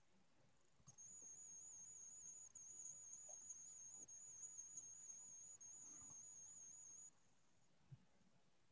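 Near silence with a faint, high-pitched steady whine that starts about a second in and stops about seven seconds in, wavering slightly in pitch. A few faint soft knocks are also there.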